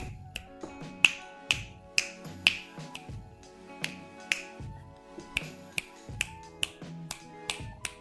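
Finger snaps beside an Anki Vector robot, about two a second and irregular, made to test how its microphones respond.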